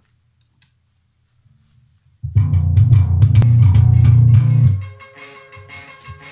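Electric bass guitar through an amp: a faint low hum, then from about two seconds in a loud run of low, sharply attacked notes lasting about two and a half seconds, after which the music carries on much more quietly.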